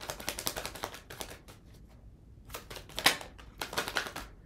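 A deck of tarot cards shuffled by hand: a quick run of light card clicks that pauses briefly halfway through, then resumes, with one sharper snap about three seconds in.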